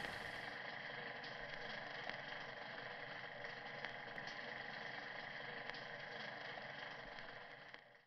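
Faint steady background hiss with a few light clicks, fading out near the end.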